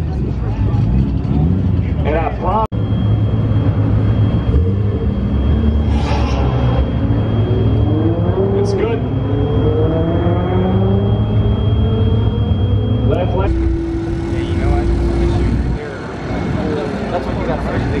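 Performance car engines running in drag-race staging lanes, with one engine note rising steadily for several seconds as a car accelerates, under background voices.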